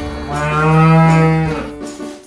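A cow's moo: one long, steady, low call lasting about a second, over light backing music.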